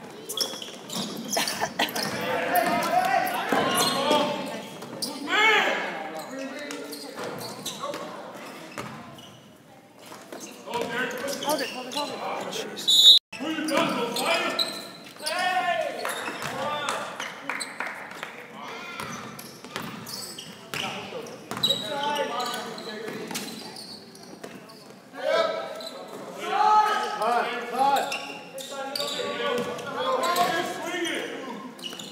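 Basketball game sounds in a gymnasium: a ball bouncing and dribbling on the hardwood court among players' and spectators' voices, echoing in the large hall. The sound breaks off for an instant about thirteen seconds in.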